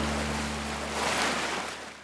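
Tail of a logo sound effect: a held low note carried over from a hit just before, with a whooshing noise swell that peaks about a second in, then fades out near the end.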